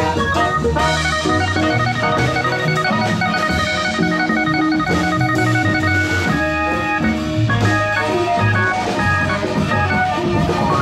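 Live band music: a keyboard with an organ sound holding sustained chords and notes over a drum kit and hand drums.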